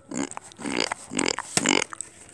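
A person's wordless voiced sounds: four short vocalizations in quick succession, each about a third of a second long.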